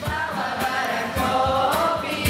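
A group of girls' voices singing a song together in sustained, held notes, accompanied by strummed acoustic guitar.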